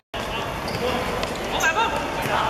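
Players shouting and calling to each other over the noise of an outdoor football game, after a brief silence at the start, with two short loud shouts about a second and a half in.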